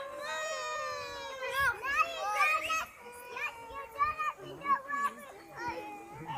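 Young children's high-pitched voices: one long drawn-out call over the first half, then short calls and chatter.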